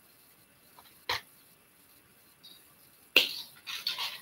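A single sharp snip about a second in, the sound of wire cutters cutting through a length of 0.8 mm craft wire, with a couple of faint ticks of handling. A short noisy rustle comes near the end.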